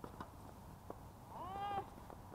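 Two sharp knocks of a tennis ball being struck during a rally, then a short high-pitched cry that rises and falls, about a second and a half in.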